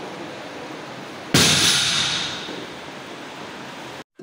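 A barbell loaded with about 210 kg is dropped from deadlift lockout. It lands on the gym floor with one sudden crash about a second and a half in, which dies away over roughly a second, over a steady background hiss of room noise.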